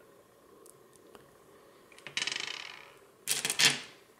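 Polished tumbled stones clinking against one another as a hand sorts through them: a quick, fading rattle about two seconds in, then a few sharper clicks near the end.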